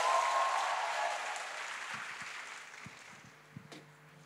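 Audience applauding, with a held cheer at the start; the applause fades away over the next few seconds.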